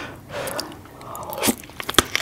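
Close-miked eating sounds: wet chewing, then a bite into a sauce-covered piece of lobster near the end, with a few sharp clicks.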